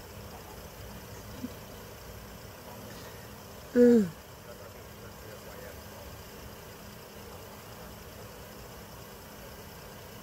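Steady low hum of idling vehicle engines, most likely the parked police SUVs. About four seconds in comes one short, loud vocal sound that falls in pitch.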